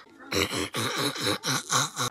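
A child doing the 'weasel laugh': a quick run of breathy, wheezing laugh pulses pumped from the chest, about four a second, starting about a third of a second in.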